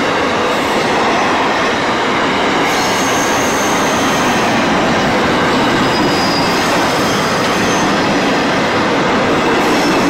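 SCT Logistics freight train's van wagons rolling past close by: a steady, loud rumble and clatter of steel wheels on the rails. Faint high-pitched wheel squeals come and go, a few seconds in and again around six seconds.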